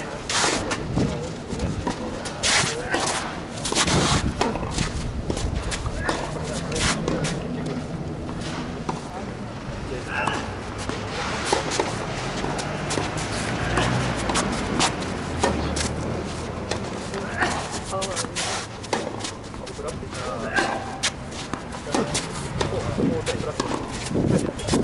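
Tennis ball struck back and forth with rackets in a rally, sharp hits at irregular intervals, with shoes scuffing on the court and voices in the background.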